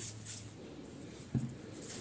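Hands rolling a soft ball of bread dough between the palms, a faint rubbing and rustling of skin on dough, with one light knock about one and a half seconds in.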